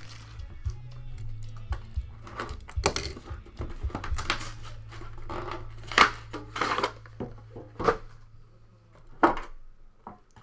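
Shrink-wrap crinkling and tearing as a sealed box of trading cards is unwrapped, with sharp crackles and light handling knocks scattered through, over background music.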